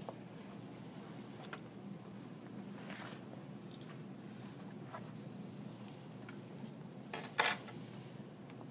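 Quiet handling during a dissection with a few faint clicks, then near the end one short, sharp metallic clatter: a metal dissecting instrument knocking against the metal dissecting tray.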